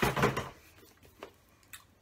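Handling noise as a vinyl LP box set is picked up and handled: a loud rustling scrape in the first half-second, then two light taps about half a second apart.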